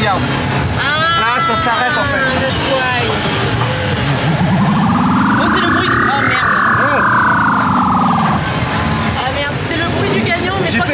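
Fairground noise with short wordless voice sounds early on, then a buzzy electronic tone that rises in pitch for about two seconds and falls back over the next two before cutting off, while a claw machine's claw lowers onto a boxed speaker.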